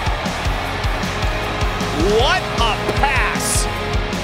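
Rock music with a steady drum beat. An excited voice rises in pitch about halfway through.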